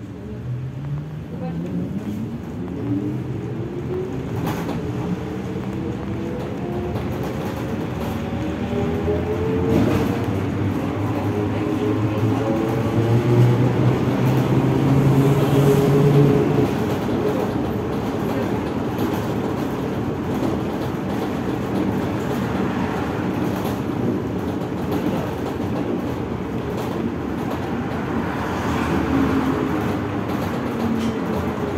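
Trolleybus traction motor whining as the vehicle pulls away, heard from inside the passenger cabin. The whine rises in pitch over about twelve seconds, peaks in loudness around the middle, then steadies and eases as the trolleybus runs on, over a constant road noise. The whine starts to climb again near the end.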